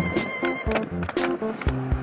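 Background music with a fast, steady drum beat of about four hits a second over a stepping bass line.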